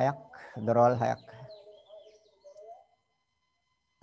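A man's voice speaks a short Sinhala phrase about a second in, then pauses while faint bird chirps are heard in the background.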